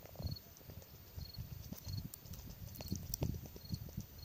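A cricket chirping steadily, a short high chirp repeating a little faster than once a second, over irregular low rustles and bumps that are louder.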